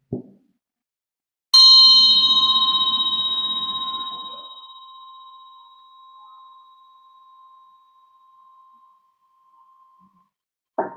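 A small metal meditation bell or bowl struck once, ringing with a clear, steady tone that slowly fades away over several seconds. A soft knock comes just before it.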